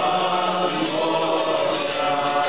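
A roomful of voices singing a folk song's chorus together, the audience joining the lead singer.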